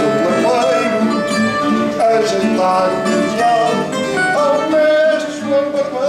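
Live fado: a man singing long, bending held notes over plucked guitar accompaniment.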